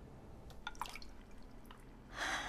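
Faint water drips: a few separate drops falling between about half a second and a second and a half in.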